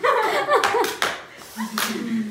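Several sharp hand claps mixed with women's laughter, the last clap near the end the loudest.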